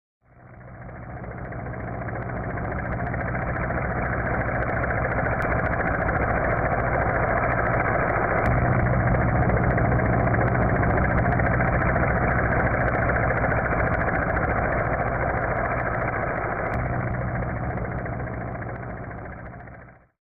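Steady hum of a quadcopter drone's motors and propellers, with a low drone under a hiss. It fades in over the first few seconds and fades out at the end.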